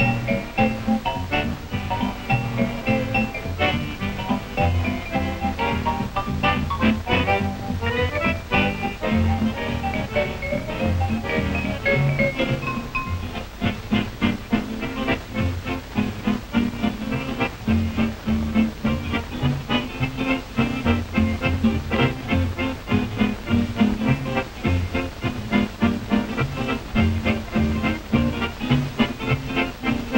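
Upbeat swing-era jazz dance music with a steady, driving beat.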